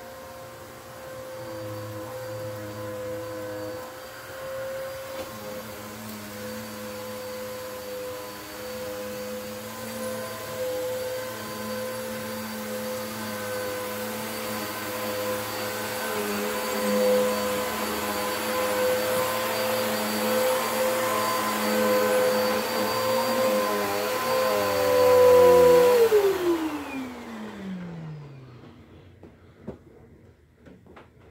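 Bagless upright vacuum cleaner running on carpet with a steady motor whine, getting louder as it comes close. About 26 seconds in it is switched off and the motor winds down, its whine falling in pitch over a few seconds.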